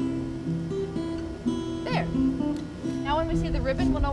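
Acoustic guitar music, plucked notes held in a slow pattern, with a brief voice about two seconds in and again near the end.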